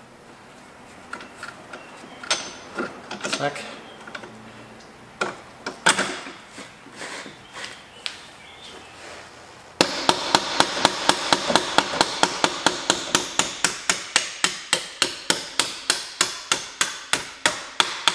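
Metal-on-metal knocks and clinks of suspension parts being handled under a car, then, about ten seconds in, a fast, steady series of light hammer taps on steel, about five a second, driving a suspension bolt back through.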